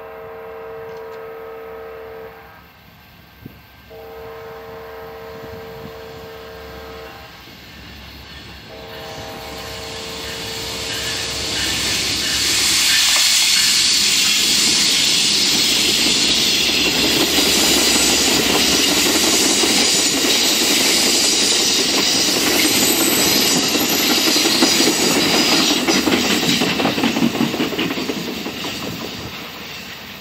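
Amtrak diesel passenger locomotive sounding three long horn blasts on approach. The train then passes close by: the locomotive and the wheels of double-deck Superliner cars on the rails run loud and steady, then fade near the end.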